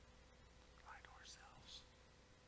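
Near silence: a faint steady hum of room tone, with a brief faint whispered voice a little after the first second.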